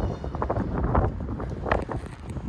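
Wind blowing on the microphone of a handheld camera, with the camera-holder's footsteps on the paved path.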